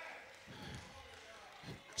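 Near-quiet pause in a large hall: the echo of the last spoken word fades, then a few faint soft thumps, about half a second in and again near the end.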